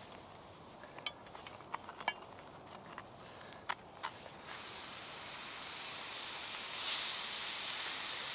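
A few light clicks and scrapes of a knife against a cast-iron ridged grill pan as a buttered cheese toastie is turned. About halfway through, a sizzling hiss builds and then holds as the freshly turned, buttered side fries on the preheated grill.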